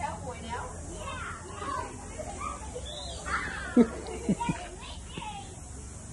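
Children's voices chattering and calling out, broken and overlapping, with a few short knocks a little past halfway, the loudest about four seconds in.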